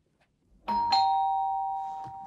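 Two-note ding-dong doorbell chime: a higher note struck about two-thirds of a second in, then a lower note a moment later, both ringing on and slowly fading.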